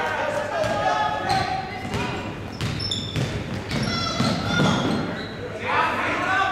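Basketball game in a gym: a ball bouncing on the hardwood floor amid shouting voices of players and spectators, with a louder burst of shouting near the end.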